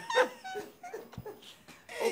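Short bursts of high-pitched laughter that die away within the first second, then a single soft low thump.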